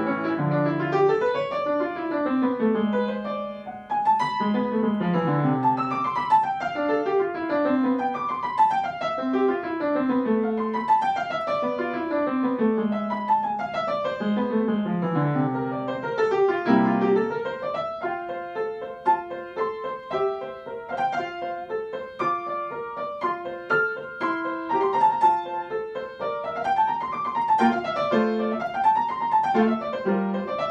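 Solo upright piano playing a classical sonata movement: fast running scales sweeping downward again and again for the first half, then quick broken figures and notes rising and falling in waves.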